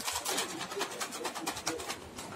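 Plastic wrapping crinkling as a small wrapped gift is handled: a quick run of irregular crackles.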